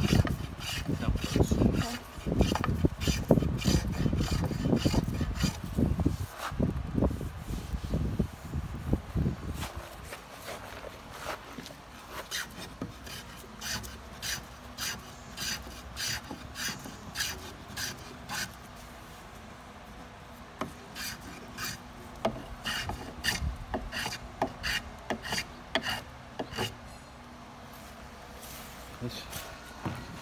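Small hand plane shaving the edge of a wooden half-hull model in rasping strokes. The strokes are heavy and close together for the first ten seconds or so, then lighter and shorter, about one and a half a second, with brief pauses between runs.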